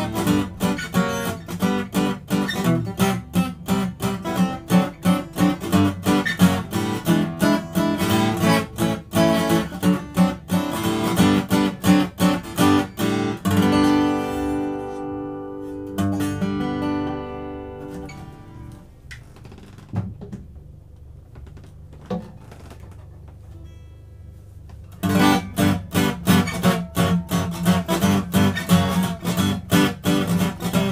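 Steel-string acoustic guitar, a Collings 12-fret dreadnought with Sitka top and phosphor bronze strings, strummed with a flatpick in a bar-chord rhythm. About halfway through the playing stops on a chord left to ring out and fade, followed by a few quiet seconds with a couple of faint knocks. Near the end the same rhythm starts again on a second Collings dreadnought, the comparison being mahogany against East Indian rosewood back and sides.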